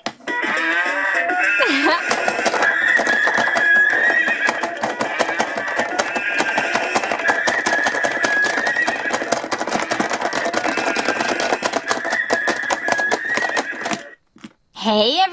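Electronic dance music from the Bubble Guppies school playset's toy speaker: a short pitched call at the start, then a fast, steady beat that cuts off at the end.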